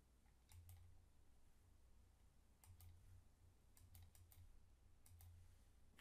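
Faint computer mouse clicks, about five pairs of short sharp clicks spread over several seconds, against near-silent room tone.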